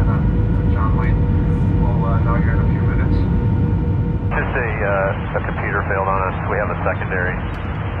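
Steady rumble of an airliner cabin in flight, with a faint steady hum and faint voices in the first half. About four seconds in, the hum stops and a radio voice of air traffic control communication comes in over the rumble.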